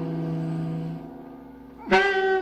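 Jazz saxophone holding a low note that fades out about a second in, followed near the end by a sharp attack on a new, higher note.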